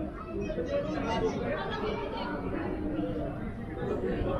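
Indistinct chatter of people's voices, with no clear words.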